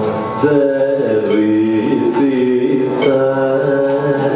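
Male Carnatic vocalist singing held, ornamented notes that slide and bend from one pitch to the next, with a violin following along.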